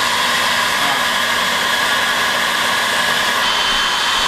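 Handheld hairdryer blowing steadily at full power: a constant rush of air with a high motor whine.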